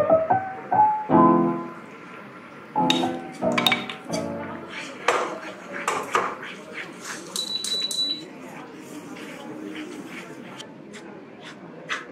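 Piano music for the first few seconds, then a wooden spatula clicking and scraping in a wok as rice flour is stirred into boiling water, leaving a quieter steady hiss near the end.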